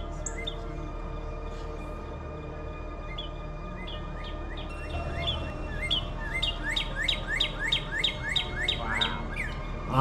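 A bird chirping: short rising chirps, a few scattered at first, then a quick regular run of about three a second in the second half, over a low steady hum.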